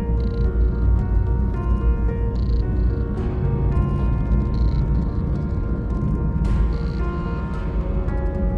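Background music of held synthesizer chords over a steady deep bass, the chords changing every second or so.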